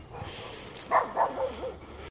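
A dog making a few short sounds in quick succession about a second in.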